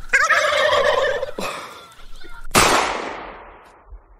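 Turkey gobbling for about a second, then a single gunshot about two and a half seconds in that dies away over a second or so.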